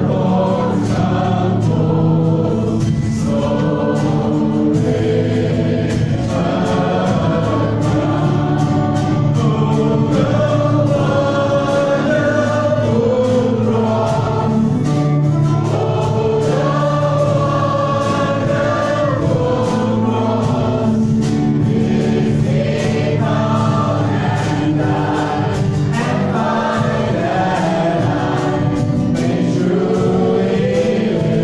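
Live worship band playing a gospel song: voices singing over acoustic guitar, electric guitar and a drum kit keeping a steady beat.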